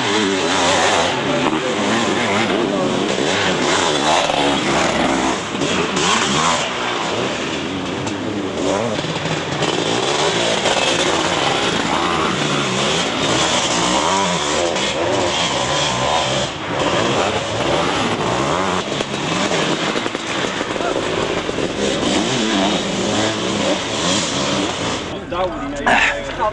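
Several sidecarcross outfits' motorcycle engines racing past on a dirt track, their engine notes rising and falling as they rev and shift, with a change in the sound about a second before the end.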